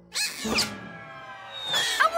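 Cartoon soundtrack music with a sudden squealing sound effect just after the start that falls quickly in pitch, then a quieter held bed of music and a rising whistle-like tone near the end.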